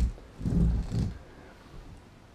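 Muffled low thumping handling noise from about half a second in, lasting well under a second, as the fly-tying vise's pedestal base is gripped and shifted on the desk.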